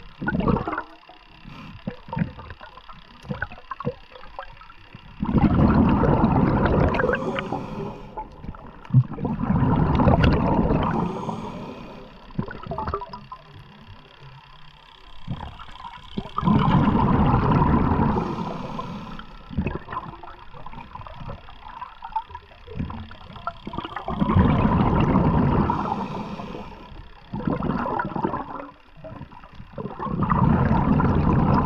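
Underwater rushing and gurgling water noise that comes in surges two to four seconds long, about every six to eight seconds, with quieter stretches between, as a diver swims along the seabed.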